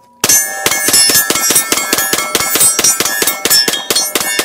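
Sig P320 pistols fired in rapid strings at steel targets, shots coming about six a second, with the struck steel plates ringing on between them. The shooting starts about a quarter second in.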